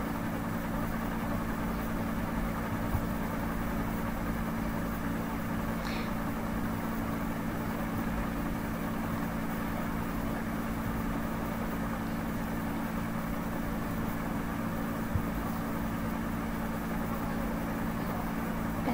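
A steady low mechanical hum with a faint hiss behind it, holding level throughout. There is one brief faint click about six seconds in.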